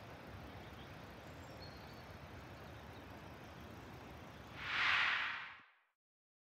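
Faint steady outdoor ambience with a low rumble, then near the end a brief whoosh that swells and fades over about a second, after which the sound cuts off abruptly.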